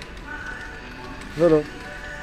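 A man says one short word over steady supermarket background hum, with faint steady tones underneath.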